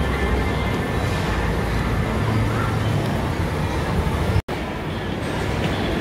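Busy indoor shopping-mall ambience: a steady din of background noise and indistinct voices with a deep low rumble. The sound cuts out for an instant about four and a half seconds in.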